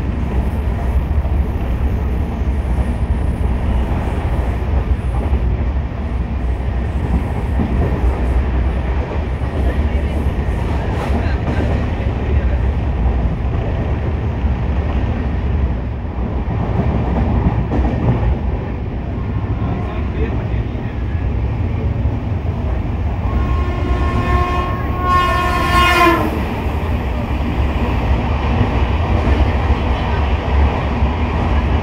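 Steady loud running noise of a moving express train heard at an open coach door: wheels rumbling on the track with rushing air. About three-quarters of the way through, the locomotive's horn sounds once, for nearly three seconds.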